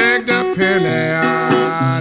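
Acoustic blues music led by guitar, its melodic lines bending in pitch.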